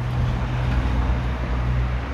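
Street traffic noise: a steady low rumble with no break.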